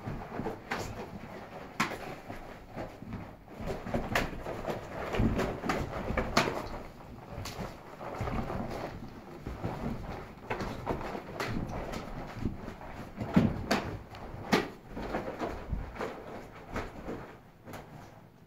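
Irregular sharp slaps and dull thuds from a martial artist's hand strikes and footwork during a solo Kuntao mantis form, with the loudest strikes a little past the middle.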